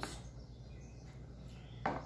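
Quiet room tone with a steady low hum, and one brief click near the end.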